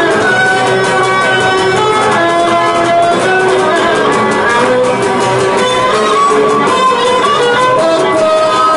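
Cretan lyra and laouto playing a Cretan dance tune live: the bowed lyra carries the melody over the steadily strummed laouto.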